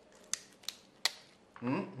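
Three sharp cracks about a third of a second apart as a raw chicken foot is bent and its joint snaps, breaking the bone free from the skin during deboning.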